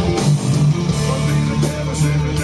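Live rock band playing an instrumental passage: electric bass holding low notes under electric guitars, with drums and cymbals, all amplified through stage amps.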